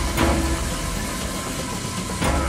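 Sci-fi energy-beam sound effects over a steady low rumble: a sudden blast with a downward-sweeping zap about a quarter second in.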